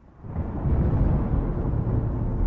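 Opening of a slowed, reverb-drenched, bass-boosted nasheed: a deep, heavy rumble that swells up out of silence within the first half second and then holds.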